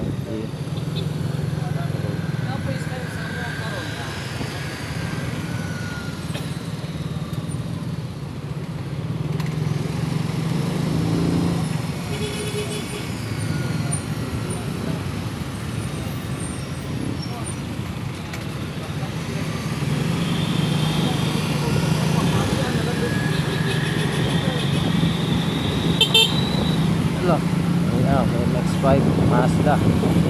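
A car driving in slow city traffic: steady engine and road hum, with short vehicle-horn toots about midway and again later on.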